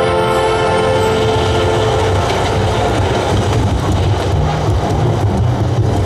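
Projection-show soundtrack over the park speakers: held music notes fade out about two seconds in, giving way to a loud, deep rumbling with a crackle over it.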